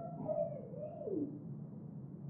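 A boy crying softly, a few falling, whimpering moans in the first second or so that fade to quiet.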